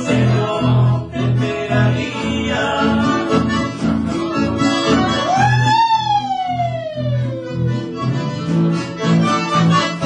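Accordion and acoustic guitars playing a lively tune together, with a steady bass pulse about twice a second. About halfway through, a long high cry rises quickly and then glides slowly down over a couple of seconds.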